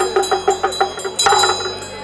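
A Tibetan damaru hand drum rattled in a fast, even beat of about five or six strokes a second, with a ritual hand bell ringing steadily underneath. There is a louder stroke a little over a second in, and the beat thins out near the end.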